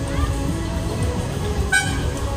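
Loud fairground ride music with a heavy beat playing over the ride's sound system, with a short horn blast near the end.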